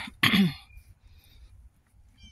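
A woman clearing her throat once, a short, loud burst near the start.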